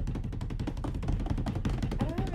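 Drumroll for a big reveal: fast, even drum strokes, a dozen or more a second, held at a steady level.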